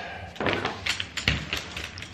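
Clicks and knocks of an ultralight folding camp chair's frame poles being pulled apart and handled, about four sharp knocks, one with a dull thud about a second in.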